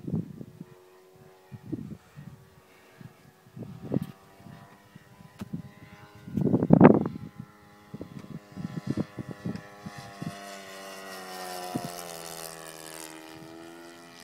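O.S. 52 four-stroke glow engine of an RC model plane in flight, a distant steady drone that grows louder and rises in pitch in the last few seconds, then drops slightly near the end. Several short rushing bursts come through in the first half, the loudest about halfway.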